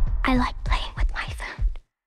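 Trailer sound design: a run of about six short low hits, each dropping in pitch, under a whispering voice. Everything then cuts off suddenly to dead silence near the end.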